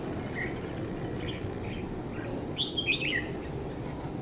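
Red-whiskered bulbuls calling: a few short, high chirps, with a quick run of notes about three seconds in.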